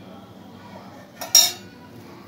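Flour dough being worked by hand in a metal mixing bowl, quiet at first. A little over a second in comes a single sharp metallic clink against the bowl, ringing briefly.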